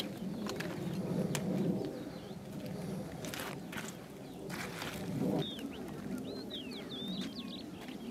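Birds calling: a low cooing pulsing in the background, joined about halfway through by quick, high, chirping notes. A few sharp clicks come in between.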